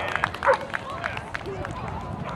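Background voices with scattered light clicks and taps, and one short call about half a second in.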